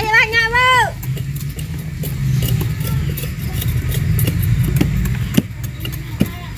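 Machete blade scraping and chopping the rind off sugarcane stalks: a run of quick scrapes and knocks, one sharper knock near the end. A short high call sounds at the very start, and a low steady rumble runs underneath.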